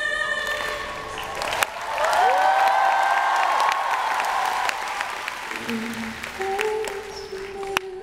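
A held sung note ends, and the audience applauds and cheers for several seconds. Near the end, the song comes back in softly with steady low notes.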